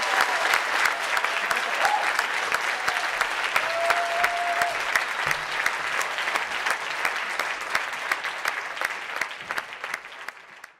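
Large audience applauding after a talk: dense, steady clapping that slowly dies down toward the end.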